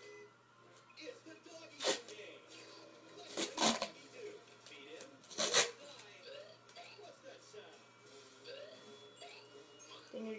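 Duct tape being pulled off the roll in three short ripping bursts, the longest about three and a half seconds in.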